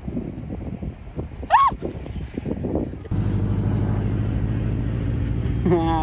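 A short voiced call about one and a half seconds in, then, from a sudden cut about three seconds in, a car engine running with a steady low drone.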